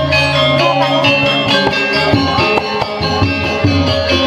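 Balinese gamelan playing: bronze metallophones ringing in many overlapping tones over struck percussion and a sustained low tone.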